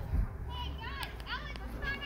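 Children calling out in short, high-pitched shouts at a distance, starting about half a second in, over a low rumble of wind on the microphone.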